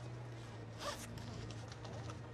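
A short rasp, like a zipper being pulled, about a second in, followed by a few faint clicks, over a low steady hum.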